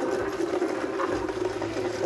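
A small motor-driven hulling machine running with a steady hum and rattle as grain is fed through it.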